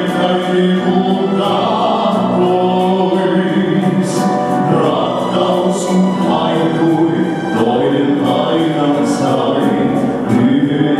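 Male vocal group singing a Finnish song in harmony into handheld microphones, several voices blended together with sharp sibilants on the words.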